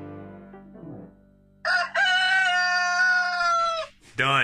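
A rooster crowing once: a short opening note, then one long call held for about two seconds that drops slightly in pitch as it ends. The tail of background music fades out before the crow.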